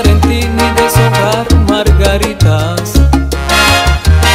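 Instrumental passage of salsa music, with a bass line moving in held notes under steady percussion and pitched instrument lines.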